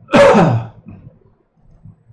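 A man's single loud, explosive burst of breath into his fist, lasting about half a second, his voice falling in pitch as it ends: a sneeze or hard cough.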